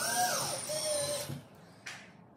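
DeWalt cordless drill driving a screw into the ceiling: the motor's whine rises and then falls in pitch, stopping about a second and a half in.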